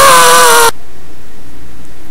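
A girl's loud, high-pitched scream, held for under a second.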